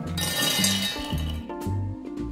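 Toasted hazelnuts clattering into a stainless steel pot as they are poured in, a dense rattle over about the first second, under background music with a steady bass line.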